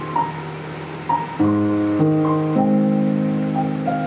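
Digital piano played with both hands: held chords in the lower-middle range change about every half second from a bit past a second in, under a slow melody of single higher notes.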